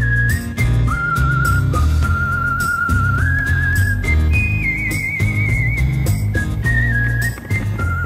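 Background music: a whistled melody with vibrato, stepping between a few notes, over a bass line and a steady beat.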